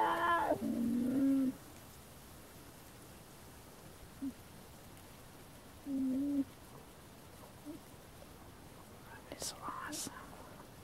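Short, low, steady hums: one runs on to about a second and a half in, another comes around six seconds, with smaller blips between. It is typical of a black bear cub humming as it sucks and chews on its own foot pads. A couple of faint clicks come near the end.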